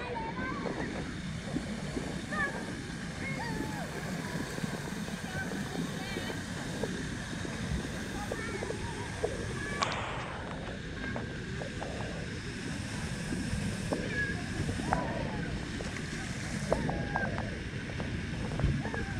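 Water splashing and sloshing in a pool, with many voices in the background. About ten seconds in it changes to water pouring and spraying down from a water-play structure into shallow water.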